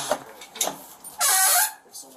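Metal storm door being opened and swung, with a couple of clicks and then a loud half-second squeal from its hinge or closer about a second in.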